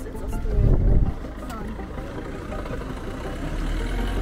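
Street ambience with passers-by talking, a brief low rumble on the microphone about a second in, and a car driving past close by near the end.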